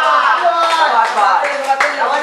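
A small group of spectators clapping, with several voices cheering and shouting over the applause.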